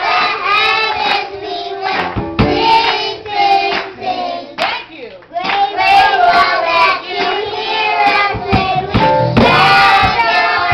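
Children's choir singing a gospel song together, with hand clapping; the singing breaks off briefly about halfway through.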